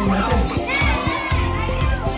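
Crowd of children and adults shouting and cheering over background music, voices overlapping at a high pitch.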